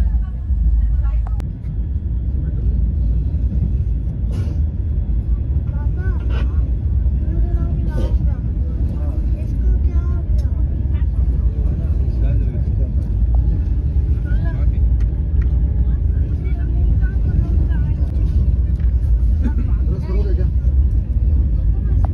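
Passenger train running, a steady low rumble heard from inside the carriage, with faint voices of people talking and a few light clicks.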